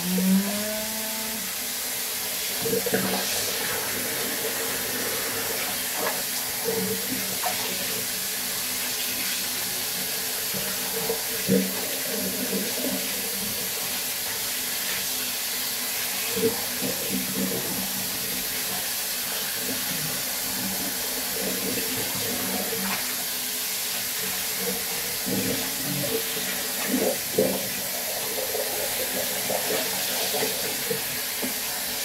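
Water running steadily into a bathroom sink as a cat is washed in it, with a few brief sounds now and then.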